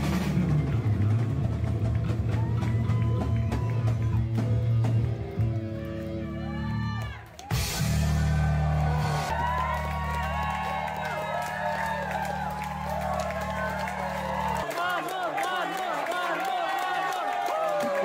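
A live metal band on guitar, bass and drums plays to the end of a song: a loud crash about seven and a half seconds in, then a held chord that cuts off about fifteen seconds in. A concert crowd cheers and shouts from just after the crash onward.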